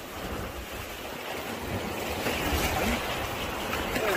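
Small sea waves washing over shallow sandy water at the shoreline, a steady wash that grows slowly louder.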